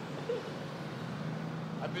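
Steady low rumble and hum of city traffic, with voices around.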